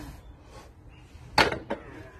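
Loaded barbell lowered between deadlift reps: its rubber-coated weight plates knock down on concrete paving slabs about one and a half seconds in, with a lighter second knock just after.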